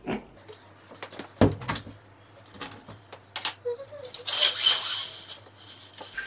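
A slatted Venetian blind being let down: a few clicks and knocks, then about a second of rattling slats and cord near the end.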